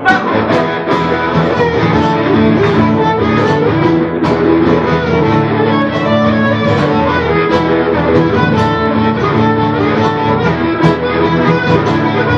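Live blues played by a small band: a harmonica, cupped in the hands, plays sustained, bending notes over guitar accompaniment with a steady beat.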